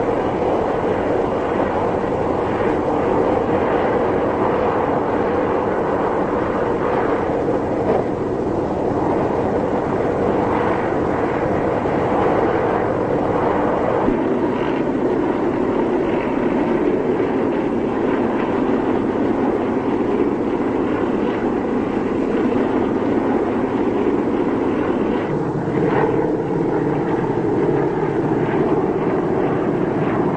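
Many propeller aircraft engines of a formation flying overhead, a continuous loud drone that shifts slightly in tone twice.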